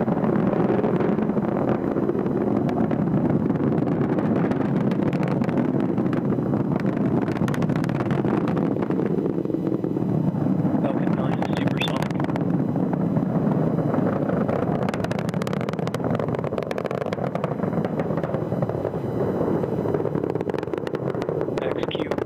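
Falcon 9 first-stage engines roaring during ascent: a steady, crackling rumble that holds at one level without a break.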